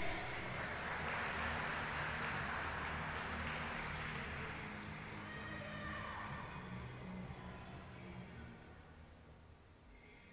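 Applause from a small crowd in a large echoing ice arena, gradually fading away over several seconds.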